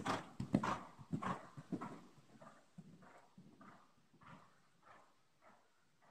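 Horse's hoofbeats on soft dirt arena footing, about two strides a second, loud as the horse passes close and fading as it moves away.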